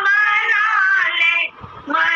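A woman singing a bhajan, holding one long note that wavers and droops slightly in pitch, then breaks off about one and a half seconds in for a short pause before the next phrase.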